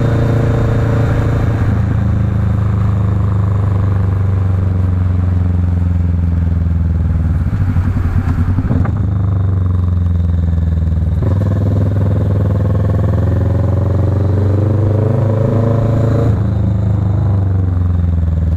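Kawasaki Vulcan S 650 parallel-twin engine running under way as the motorcycle is ridden. The engine note drops about eight seconds in, then climbs steadily for several seconds as the bike accelerates, and drops again near the end.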